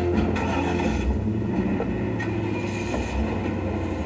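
A low, steady rumble with a faint held musical drone from the TV episode's soundtrack.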